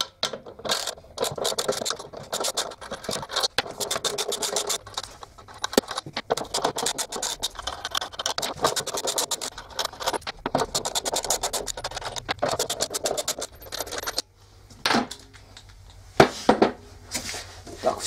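Ratchet wrench with a 10 mm socket clicking rapidly as it unscrews the bolts that hold the stator of a direct-drive washing-machine motor. It goes quieter near the end, with a few separate clicks.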